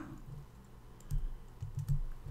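Computer keyboard typing: a few soft, scattered key clicks over a faint low hum.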